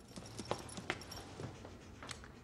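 A dog's claws clicking on a hard floor as it walks, a few faint, irregular taps.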